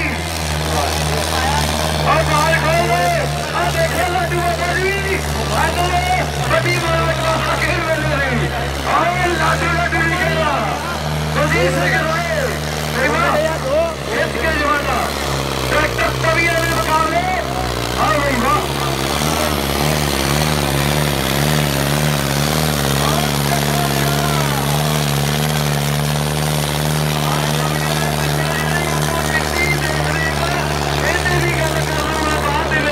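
Tractor engine running hard and steady under load as it drags a disc harrow (tavi) through the dirt. A voice carries loudly over it for the first two-thirds.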